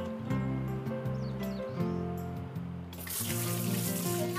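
Running water from a kitchen sink tap, with cut melons being rinsed under it, comes in suddenly about three seconds in over soft background music.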